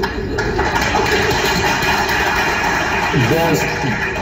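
Recorded debate audio over a steady low rumble: a stretch of crowd noise from a live audience, then a man's voice briefly near the end.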